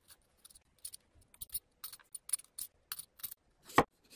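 Metal Y-peeler scraping a raw potato in a quick series of short, light strokes, taking off only the blemished bits of skin. Near the end a chef's knife cuts through the potato onto a wooden cutting board with one louder stroke.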